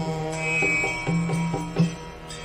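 Indian devotional music: a sung Sanskrit prayer over a steady drone, with plucked string notes that sound like a sitar.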